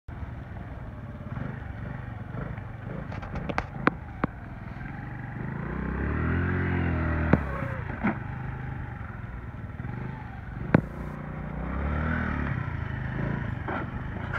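Honda NAVI110's small single-cylinder engine revving up and easing off twice while riding over rough ground, with sharp knocks and clicks in between.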